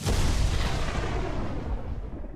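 A deep boom sound effect for the segment title card. It hits suddenly and rumbles away over a couple of seconds.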